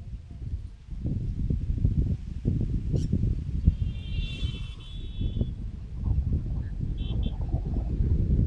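Wind gusting on the microphone in open country, a low uneven rumble. A high call lasting about a second and a half rises over it about four seconds in, and two short high chirps follow near the end.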